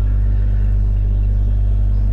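A steady low hum that holds an even level throughout, with no other sound standing out.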